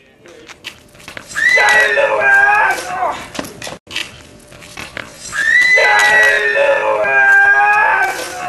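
A person's voice giving two long, loud, strained cries, the first about a second and a half in and the second from about five seconds, each held and falling slightly in pitch at the end.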